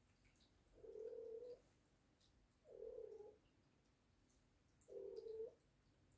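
Three faint, low animal calls, each held at a steady pitch for under a second, spaced about two seconds apart.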